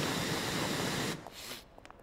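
Aerosol can of disinfectant spraying in one steady hiss that cuts off about a second in.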